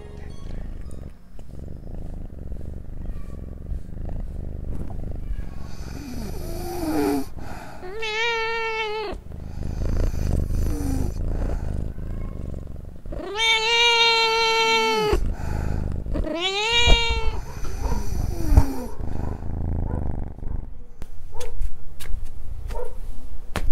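A cat meowing several times over a continuous low purr. The calls rise and fall in pitch; the loudest is a drawn-out meow of about two seconds past the middle, with shorter ones before and after it.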